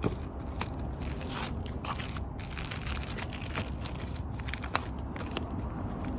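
Crackling and rustling of plastic-sleeved cross-stitch pattern leaflets and paper being handled, with many irregular sharp clicks, one sharper snap about three-quarters of the way through, over a steady low hum.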